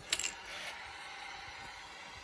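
Ignition key clicking as it turns in the MV Agusta F4 1000's switch, followed by a steady whir as the ignition comes on, the fuel pump priming.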